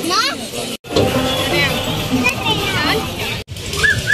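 Children's voices and chatter, with music underneath. The sound cuts out abruptly for an instant twice, at edit joins.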